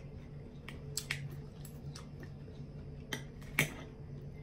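Metal spoon and fork clicking against a ceramic bowl while scooping food: a handful of sharp clicks, the loudest near the end, over a steady low hum.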